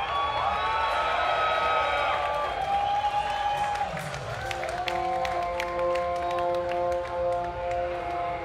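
Festival crowd cheering, whistling and clapping after a black metal song ends, and about halfway through a sustained droning chord of several held notes begins under the applause.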